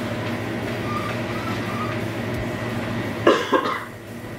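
A person coughing twice in quick succession about three seconds in, over a steady low hum.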